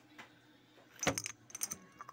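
Metal tube pieces for a homemade PCP air tank clinking and rattling against each other in the hands: a cluster of sharp, ringing clinks about a second in, then a few more shortly after.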